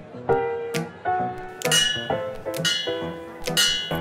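Instrumental music playing back: a slow line of separately struck, piano-like notes, about two a second, each ringing and fading.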